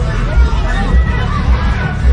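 Street crowd chatter and overlapping voices over music with a heavy bass beat, about two beats a second.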